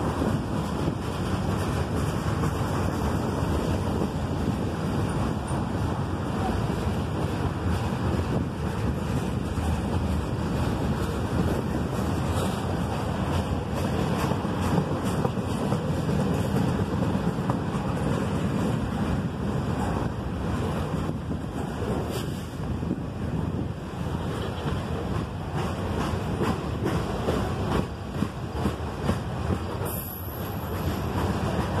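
Freight cars rolling past below: a steady rumble of steel wheels on the rails, with wind noise on the microphone and a few sharper knocks near the end.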